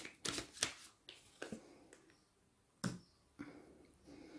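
A deck of tarot cards being shuffled by hand: a series of short, sharp card slaps that come quickly at first, thin out after about a second, and end with a single loudest slap near three seconds in.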